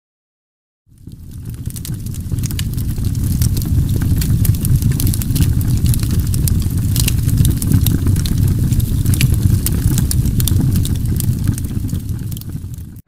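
A steady low rumble with many small crackles over it, fading in about a second in.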